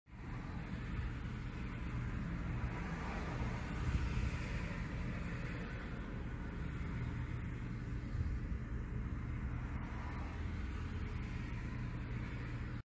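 Steady low rumble of road traffic, swelling a little about four seconds in.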